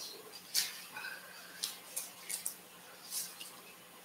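A quiet room with about six faint, short clicks scattered over four seconds.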